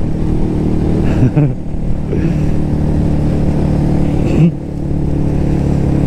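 Motorcycle engine running at a steady note while riding, heard on board.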